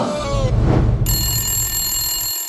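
Telephone bell ringing, starting suddenly about a second in over a low bass note of music; before it, the last of a sung jingle trails off.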